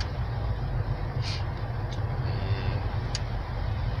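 Car driving, heard from inside the cabin: a steady low rumble of engine and road noise, with two faint ticks about a second in and near the end.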